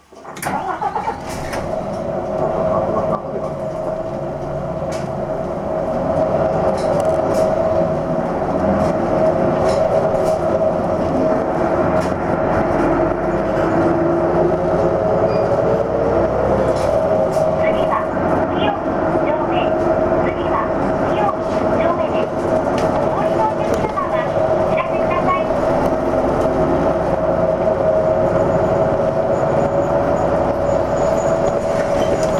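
A Hino Blue Ribbon II city bus's diesel engine starts abruptly after standing silent at a stop, then the bus pulls away and speeds up, its engine note rising over the first several seconds, with a steady whine over the engine.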